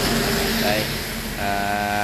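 Vehicle engine running steadily with road noise while riding along slowly. A steady pitched sound comes in about a second and a half in.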